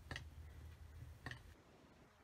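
Two faint ticks, about a second apart, as a roller is pressed over a metal stencil on cork clay; otherwise near silence.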